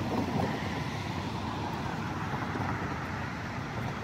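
Steady outdoor background noise: an even low rumble and hiss with no distinct events, of the kind distant road traffic makes.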